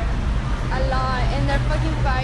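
Steady low rumble of a vehicle, with a young woman's voice talking over it in the second half.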